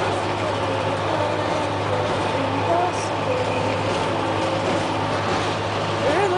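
Bus cabin noise while riding: a steady low engine drone under even road rumble.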